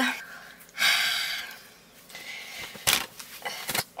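Close-up movement and handling noise: a short breathy rush of noise about a second in, then two short sharp knocks near the end.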